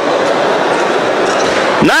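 Steady background noise of a large, echoing mosque hall: a dense wash of distant voices and hiss, as loud as the speech around it.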